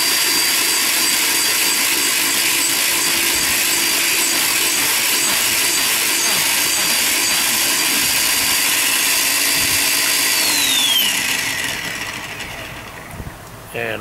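Flywing FW450 RC helicopter's electric main motor and rotor head spinning on the bench under a home-built ESC, a steady high whine. About ten and a half seconds in it winds down, the pitch falling as it slows.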